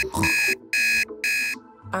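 Digital alarm clock beeping: short, high electronic beeps about two a second, three in a row and then stopping.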